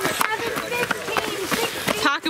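Cross-country runners' footsteps on a leaf-strewn dirt trail: a quick run of footfalls as they pass close by, with faint voices behind.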